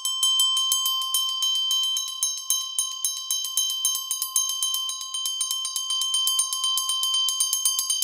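Nepalese bell struck in a rapid tremolo, several strokes a second, over its steady high ringing tone. This is the unprocessed original sample.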